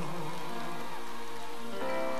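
Live band accompaniment to a slow pop ballad holding sustained chords between sung lines, with the tail of the singer's last note fading at the start and a chord change near the end.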